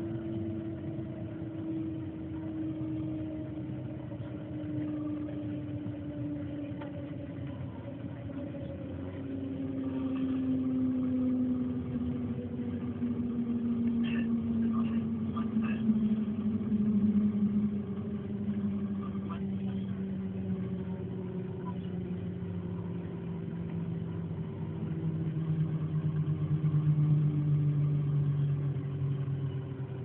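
Cabin noise of the Shanghai Transrapid maglev train decelerating: a steady rumble of running noise with a whine from the propulsion drive that falls slowly and steadily in pitch as the train slows for the station.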